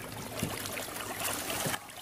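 Water splashing and trickling beside a boat as a hooked fish is brought in at the surface, an even wash with a few small splashes.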